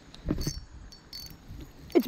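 Insects chirping in short, high-pitched bursts, with a brief rustle of handling noise about half a second in.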